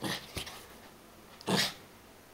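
Small one-year-old dog giving two short, sharp barks, one at the start and one about a second and a half in, frightened by a pin held out to her.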